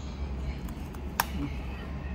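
A single sharp crack about a second in, a bite into a crisp cracker topped with Russian salad, over a low steady room hum.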